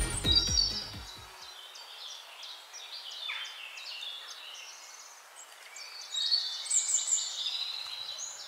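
Theme music fades out over the first second or so. Then come the short, high chirps of small birds, repeated, and busiest near the end.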